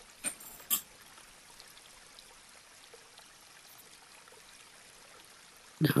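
A hair stacker tapped twice, two sharp taps about half a second apart, to even up the tips of a clump of deer hair for a caddis wing. Faint room tone follows.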